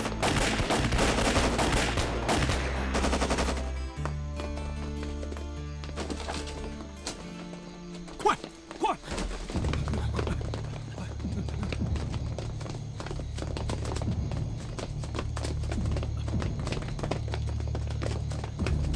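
Rapid gunfire, shots in quick succession, for the first three seconds or so. It gives way to a low, sustained dramatic music score, with a couple of sharp hits about eight to nine seconds in.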